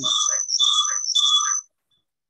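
Glitching voice-call audio: steady high whistling tones over a broken-up voice, in three stretches of about half a second each, cutting out after about a second and a half. The sign of a faulty audio connection on the caller's side.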